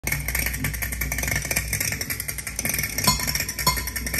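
Shellac 78 rpm record playing on a turntable: crackle and hiss of the record's surface noise over a low hum. About three seconds in, the first evenly spaced percussion strokes of the song start to come through.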